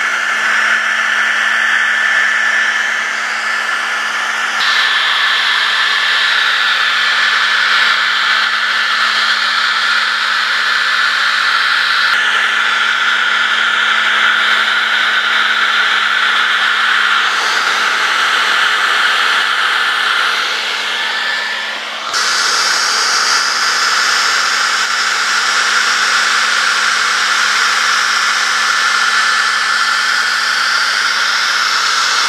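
Hand-held hair dryer running on its low speed setting, a steady rush of air with a thin whine, blown over freshly poured epoxy-and-filler mix to draw out surface bubbles. Its sound shifts abruptly a few times.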